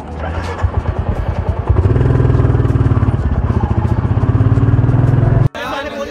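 Royal Enfield Classic 350's single-cylinder engine running on the move, with an even, rapid exhaust pulse, getting louder about two seconds in. It cuts off suddenly near the end, and voices follow.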